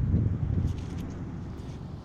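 Wind buffeting the microphone, an uneven low rumble that eases off towards the end, with a couple of faint clicks about a second in.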